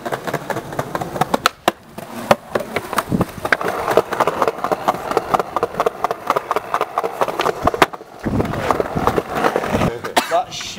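Skateboard wheels rolling over stone paving slabs, with many sharp clicks and knocks from the wheels and board, as the board is ridden up onto a stone wall. The sound changes abruptly about eight seconds in.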